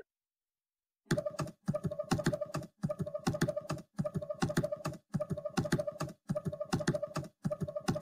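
Computer keyboard typing, with clicks in short repeated chunks cut apart by abrupt silent gaps, starting about a second in. It sounds looped.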